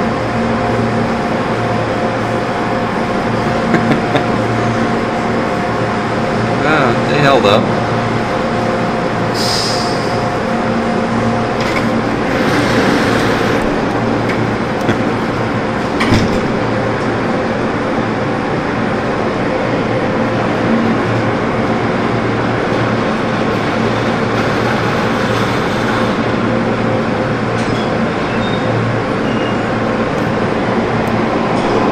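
Tunnel car wash running: a steady wash of water spray and spinning friction brushes over a constant machine hum from its motors and pumps, with a few short knocks as the brushes and cloth strips hit the vehicle.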